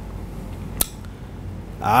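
A pause in a man's speech into a microphone, with a steady low hum and one sharp click a little under a second in. His voice resumes near the end.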